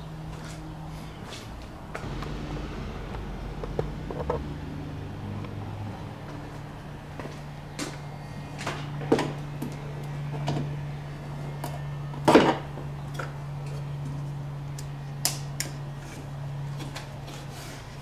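Scattered plastic clicks and knocks as an oval LED camper light fixture is handled and its lens cover is taken off, with the sharpest snap about two-thirds of the way through. A steady low hum runs underneath.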